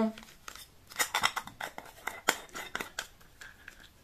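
A small plastic cosmetics container of highlighting pearls being handled and turned over: a run of irregular light plastic clicks and taps, a few of them sharper.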